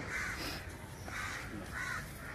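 A bird calling three times in short, harsh calls.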